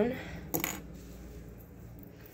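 A single short clink about half a second in, from a small hard object handled while the hair is being taken down, over a faint low room hum.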